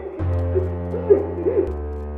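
Background film-score music: sustained low droning tones that change about one and a half seconds in. A few short voice-like cries sound over it before the change.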